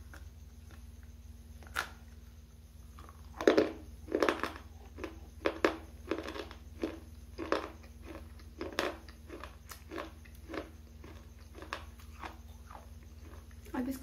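Biting and crunching a hard, dry bar right at the microphone. A loud bite snaps off a piece about three and a half seconds in, then crisp chewing crunches follow about twice a second, slowly growing fainter and fewer.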